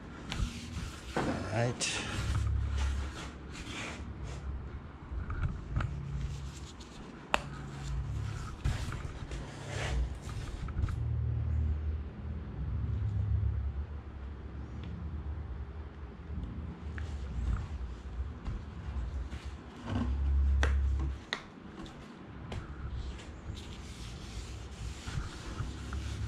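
A cloth rag rubbing an oil finish into an oak board, with a few light clicks from a squeeze bottle. Heavy low rumbles of handling noise come and go throughout and are the loudest thing, strongest about twenty seconds in.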